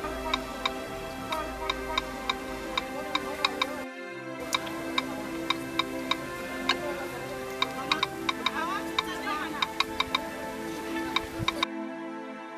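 Smartphone key-press clicks as a message is tapped out: quick, irregular ticks, several a second, over soft background music. The music and clicks cut out briefly about four seconds in.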